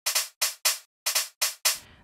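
A sequenced electronic drum pattern playing on its own: short, bright percussion hits about four a second, some of them doubled. The hits are pushed slightly off the grid by the plugin's note-delay setting to give the rhythm a human groove.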